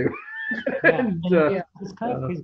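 Conversational speech, opening with a short high-pitched vocal sound that slides in pitch.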